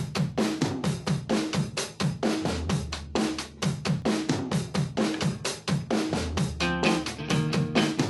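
Soundtrack music: a fast, steady drum-kit beat of bass drum and snare, with a pitched instrument coming in near the end.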